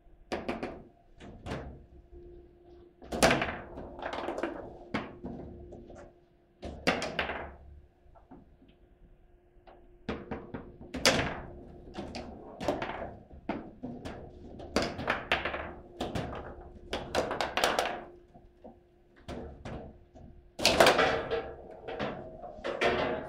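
Foosball table in play: a string of sharp plastic clacks and knocks at irregular intervals as the ball is struck by the rod figures and rattles against the table, some coming in quick flurries. A faint steady hum runs underneath.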